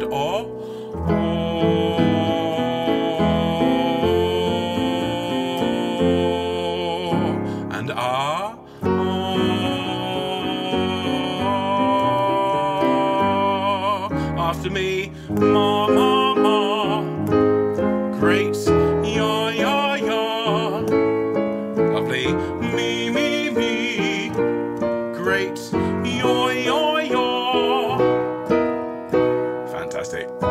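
Piano accompaniment for a vocal warm-up, playing a short stepped pattern that repeats a step higher each time. A man's voice hums along, with a cathedral-like reverb on it.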